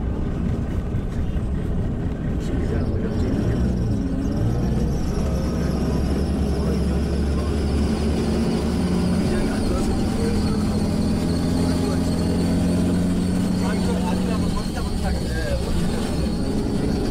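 Steady low drone of a tour bus's engine and road noise, heard from inside the cabin while it drives.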